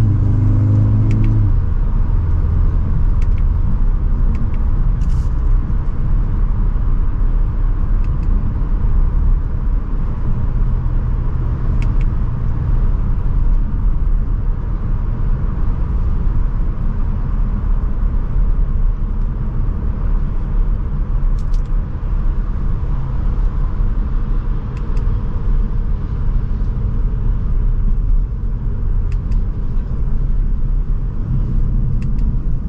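Cabin sound of a 2024 Audi S3 on the road, with its turbocharged 2.0-litre four-cylinder's engine note heard only in the first second or so. After that, a steady low rumble of road and tyre noise.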